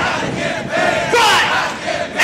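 Several male voices shouting and yelling together, their pitches sliding up and down over one another without clear words.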